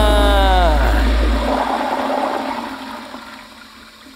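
Closing hit of an intro music sting: a deep boom with tones that slide down in pitch, then a rushing, water-like wash that fades away over a few seconds.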